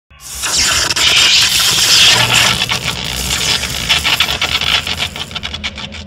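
Logo-reveal sound effect: a loud rushing hiss full of crackling, which thins out into scattered separate crackles toward the end.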